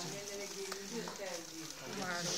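Indistinct voices of people talking close by in a room, with no single clear speaker.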